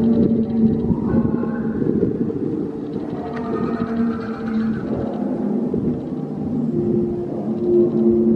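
Atmospheric background music with long, held low tones and softer higher notes over them; a new held note comes in near the end.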